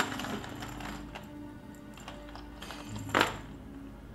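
A hand rummaging in a cardboard box, with faint small clicks and clinks and one louder short rustle about three seconds in, over quiet background music.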